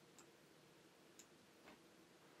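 Near silence: room tone with three faint, short clicks of a computer mouse, about a second apart.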